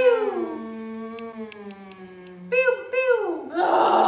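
Overlapping voices wailing in long, howl-like tones: one held steady for about two and a half seconds while others slide slowly downward, with a new wail swelling near the end. A few faint ticks fall in the middle.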